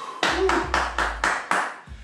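A quick run of hand claps, about seven sharp claps in a second and a half.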